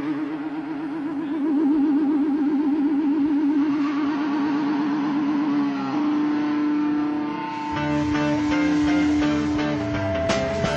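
Electric guitar holding a long sustained, ringing note with a wide, fast vibrato. About six seconds in it settles into a steady held tone. Near the end a bass line comes in underneath with a rhythmic pattern as the band starts a song.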